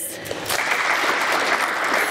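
Audience applauding, swelling about half a second in and then holding steady.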